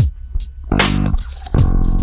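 Background film music: plucked bass and guitar notes over a drum beat with low kick thumps.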